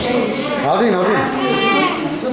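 A person's voice, high and wavering, with drawn-out rising and falling notes.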